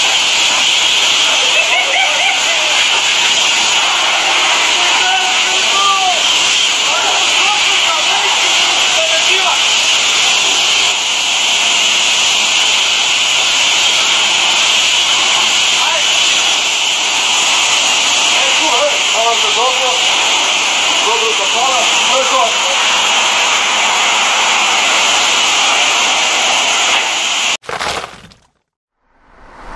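Steady, loud hiss of a high-pressure water jet washing down a rotary tiller, cutting off suddenly near the end.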